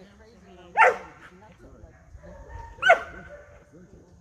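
Young Airedale terrier barking at a decoy during bite-work training: two short, sharp barks about two seconds apart.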